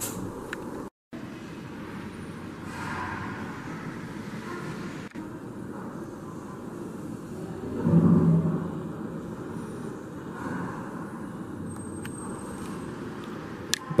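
Steady ambient background noise with a distant rumble like traffic, cut by a brief dropout about a second in and swelling into a louder low rumble about eight seconds in.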